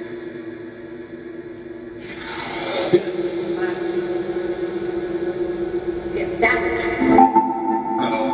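SCD-1 ghost box app output played through a small speaker: a jumble of chopped radio fragments, with snatches of music and voices over a steady drone. About two seconds in, a rising sweep builds and peaks a second later. The texture then shifts abruptly twice near the end.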